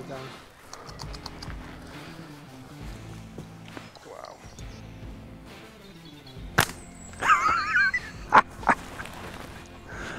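Faint background music. About two-thirds of the way through, a hunting catapult (slingshot) is loosed with one sharp snap. Two more sharp knocks follow a second or two later.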